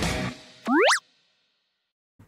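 Intro music fading out, followed by a short sound effect that glides steeply upward in pitch and cuts off after about a third of a second.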